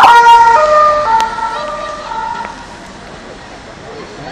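Police car siren passing close by, switching from a rapid warble to a two-tone hi-lo pattern that alternates about twice a second, fading quickly as the car moves away.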